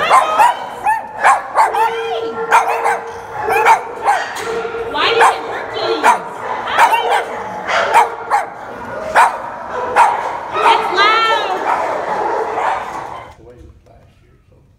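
Several dogs barking in a shelter kennel room: loud, sharp barks coming several a second without a break. Near the end the barking cuts off suddenly.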